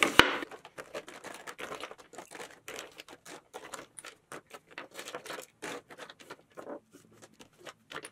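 Foundation bottles and plastic tubes being tipped out and shuffled by hand on a marble tabletop: a run of light, irregular clicks and knocks.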